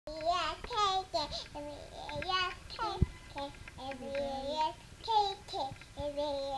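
A toddler girl singing a short song in a high child's voice, holding and sliding between notes. There is a brief sharp tap about three seconds in.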